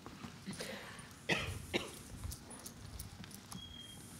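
Quiet room noise in a lecture hall: scattered small knocks and rustles as a microphone is brought to an audience member, with two short noisy bursts about a second and a quarter in and again half a second later.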